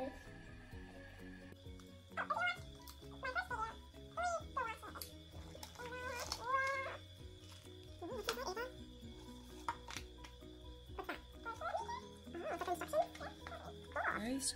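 Background music: a light, stepping melody with short gliding notes over it, and occasional crinkles of plastic packaging being handled.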